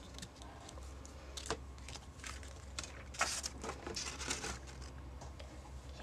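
Rubber eraser rubbing on cardstock in short, faint scratchy strokes at irregular intervals, rubbing out a pencil line, with light handling of the card.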